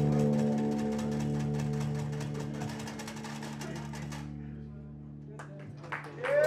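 Live trio of electric guitar, double bass and percussion holding low sustained drone tones under a fast, even pulse. The pulse cuts off about four seconds in and the drone fades away as the piece ends.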